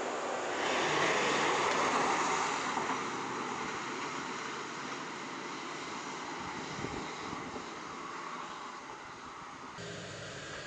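Pressure-washer jet hissing against a pickup truck's wheel and tyre, swelling loud about half a second in and then slowly fading.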